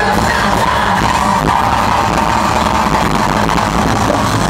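A live band plays loud amplified music, with drums, electric guitars and electronics under a vocalist singing into a microphone, and a held note runs through it. The sound is dense and steady, with no break.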